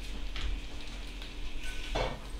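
Steady, faint sizzling of a pan on the stove, with a light click or two of metal tongs against a plate.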